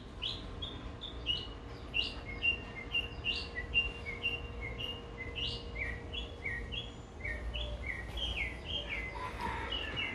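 Songbirds chirping steadily, a long run of short, quick notes, two or three a second, many dropping in pitch.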